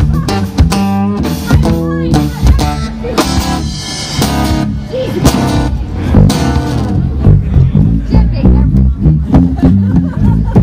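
Live band playing a song: acoustic guitar with bass guitar and drum kit.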